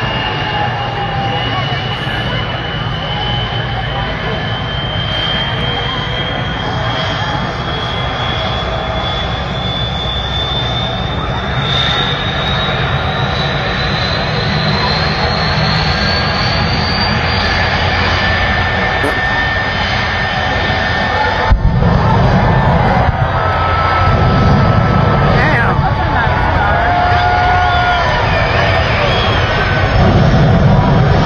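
Jet engine of a jet-powered monster fire truck, spooling up: a steady whine climbs in pitch over the first seventeen seconds or so. From about two-thirds of the way in, louder, deeper surges of jet blast come, and near the end flames shoot from the exhaust.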